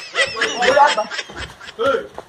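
Laughter mixed with unclear speech, with voices nearly continuous through the two seconds.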